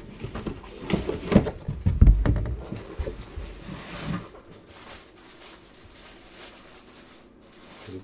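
Handling noise from a cardboard box and a clear plastic mini-helmet display case: a run of knocks and clatter with a heavy thump about two seconds in and a scrape near four seconds. It is quieter from about halfway.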